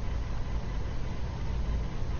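Steady low hum with an even hiss over it, unchanging throughout: background noise in the room.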